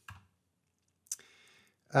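A single short, sharp click about a second in, followed by a faint breathy noise.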